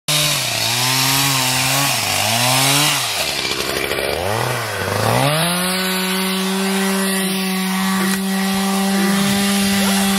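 Two-stroke chainsaw cutting into a felled tree trunk, its engine pitch rising and falling for the first few seconds, then held at a steady high pitch from about halfway through.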